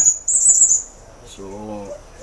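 A small animal's shrill, high-pitched trill in two short spells within the first second, followed by a man's voice saying a single word.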